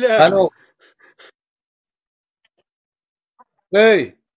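A person's voice: a short, drawn-out exclamation with a rising and falling pitch at the start, silence for over two seconds, then another short vocal exclamation near the end.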